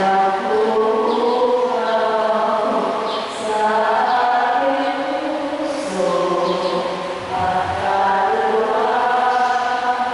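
Voices singing a slow church hymn together, in long held notes that move gently up and down, with short breaks between phrases.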